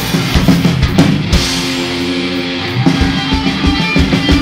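Live rock band playing an instrumental passage between vocal lines: electric guitars hold chords over a drum kit, with no singing.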